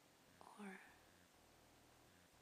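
Near silence, broken once about half a second in by a single short whispered word.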